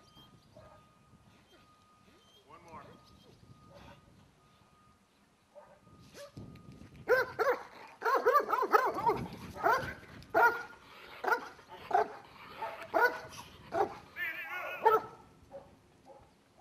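A Malinois police dog barking repeatedly, starting about seven seconds in, at roughly one bark a second, with a higher-pitched yelp near the end.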